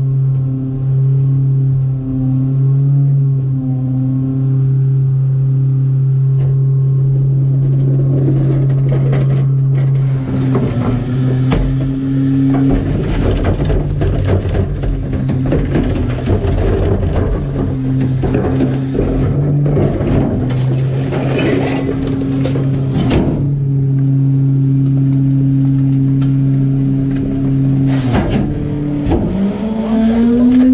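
Garbage truck engine and packer hydraulics holding a steady drone at raised revs, settling lower right at the start. Midway, cart tippers lift and dump two carts into the rear-loader hopper, with a stretch of banging and clattering trash. Near the end the drone rises again as the packer blade cycles.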